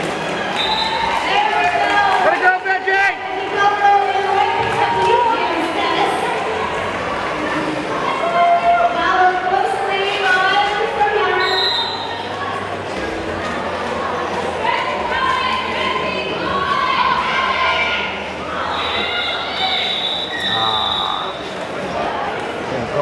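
Voices and chatter echoing in a large hall during a roller derby jam, with short high referee whistle blasts: one about a second in, one around the middle, and a longer broken run of blasts near the end that calls off the jam.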